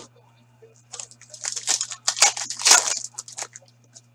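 Foil wrapper of a hockey card pack being torn open and crinkled by hand, in a run of loud crackling rustles from about a second in to near the end.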